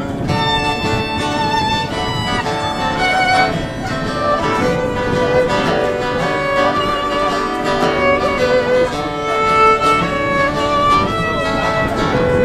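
Live acoustic fiddle playing a melody over strummed acoustic guitar.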